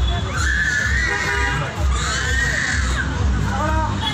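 High-pitched wavering cries from a voice: two long ones in the first three seconds, then a short call near the end, over a continuous low rumble.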